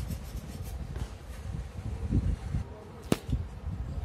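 Low rumbling handling noise from hands working on ceiling fan motor parts at a workbench, with a single sharp click about three seconds in.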